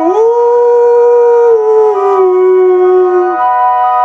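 A man's voice holding a long wordless howl of a note: it slides up at the start, dips a little about two seconds in and breaks off shortly before the end, while fainter held tones carry on above it.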